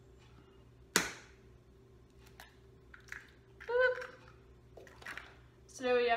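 A single sharp knock about a second in, the loudest sound, followed by a few faint handling ticks and a short murmured vocal sound about four seconds in.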